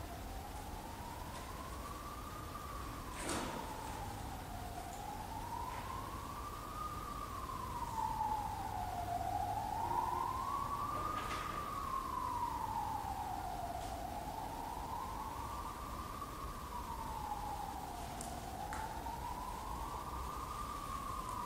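A siren-like wailing tone, one clean pitch rising and falling slowly, each rise and fall taking about four and a half seconds. Two sharp clicks cut in, about three seconds and eleven seconds in.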